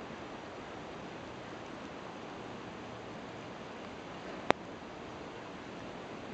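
Steady faint hiss of river ambience, with one sharp click about four and a half seconds in.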